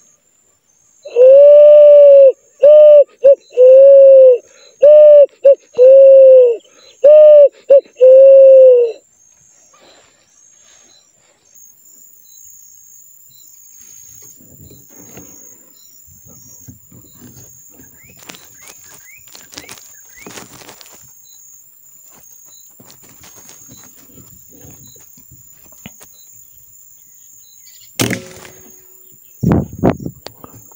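A pigeon cooing loud and close: a run of about nine arched coo notes, long and short, over some eight seconds, then faint rustling. Near the end comes a sharp click and then a thump.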